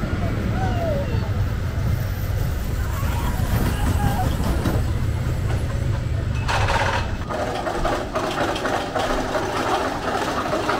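Outdoor amusement-park ambience: a steady low rumble for the first six or so seconds, then the rumble drops away, leaving background crowd chatter.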